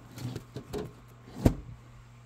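Metal signs in a bin being flipped through one at a time: a few light knocks, then one sharp clack about one and a half seconds in.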